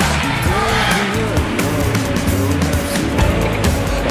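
Background music laid over the footage, with a steady, continuous bass line.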